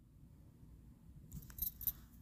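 Faint and quiet at first, then a few light metallic clicks and rustles in the last second as small metal screw pins are handled on a tabletop.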